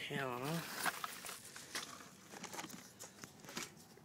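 Handling noise: scattered clicks and rustling as the phone and a hand-held part are moved about close to the microphone, busiest in the first second.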